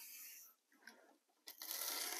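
Aerosol spray-paint can hissing in short bursts: one burst trails off in the first half-second, and another starts about a second and a half in.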